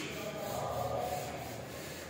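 A board duster rubbing across a chalkboard, wiping off chalk writing in steady strokes.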